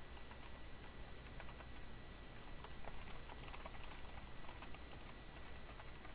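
Faint computer keyboard typing: a run of quick, irregular key clicks, busiest in the middle.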